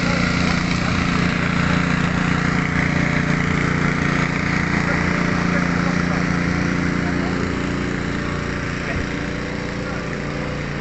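Bouncy castle's air blower running with a steady hum, getting a little quieter near the end.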